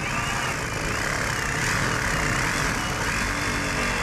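Cordless reciprocating saw running and cutting through the service-entrance conduit, a steady saw noise with a motor whine that wavers up and down in pitch.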